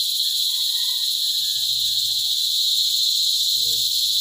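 Steady, high-pitched chirring chorus of insects, loud and unbroken, with a faint thin whistling tone drifting in about half a second in and fading about two seconds later.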